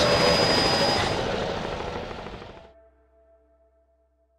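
Engines of a racing powerboat on the water, a loud, steady roar that fades out over nearly three seconds to silence.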